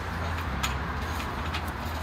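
Steady low outdoor rumble with a few faint clicks, and no voices.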